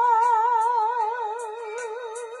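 A woman singing one long held note with a wide vibrato, which slowly fades, over a backing track with a steady ticking beat.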